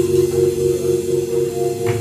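A band's final chord held on keyboards and ringing out, a few steady tones fading slowly with no drums. Near the end the first handclaps of the audience come in.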